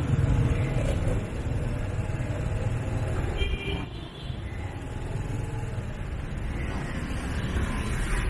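Dense city street traffic: a steady low rumble of motorbike and car engines close around, with a short horn toot about three and a half seconds in.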